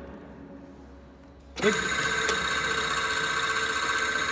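A loud steady electrical buzz starts suddenly about a second and a half in, from the operating mechanism of a Hyundai gas-insulated switchgear disconnector/earth switch.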